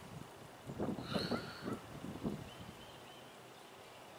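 A short, faint run of animal calls about a second in, with a fainter call shortly after.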